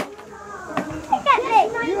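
Children's voices calling out and chattering during a piñata game, picking up about a second in after a brief lull. A single sharp knock comes right at the start.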